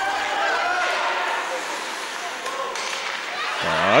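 Ice hockey rink ambience during play: a steady hiss of skates and sticks on the ice, with faint voices in the arena.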